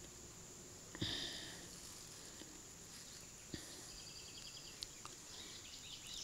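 Faint outdoor background of insects: a steady high-pitched buzz with some soft chirping trills, and two small clicks about one and three and a half seconds in.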